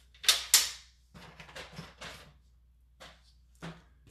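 Cardstock and a paper trimmer being handled on a wooden desk: two quick, loud scraping sounds a quarter second apart, then softer rustling and a few light taps.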